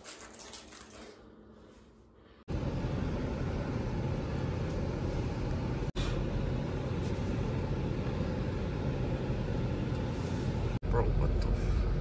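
Keys jingling briefly at first, then a steady, much louder cabin rumble from the Dodge Durango's running engine and road noise, broken by two quick cuts.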